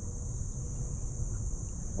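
Steady high-pitched chorus of insects, crickets and the like, with a low rumble underneath.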